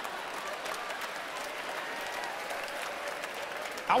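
Large theatre audience applauding steadily in a pause after a punchline.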